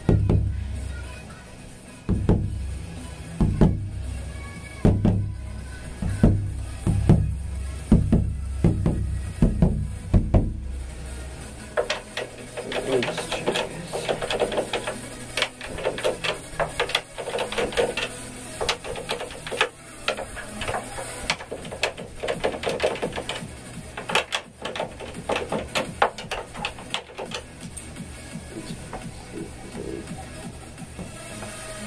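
Freshly tuned Tama Imperialstar bass drum struck again and again, about one deep, ringing thud a second, for the first ten seconds or so. After that the deep thuds stop and a busy run of lighter, sharper knocks and clicks follows.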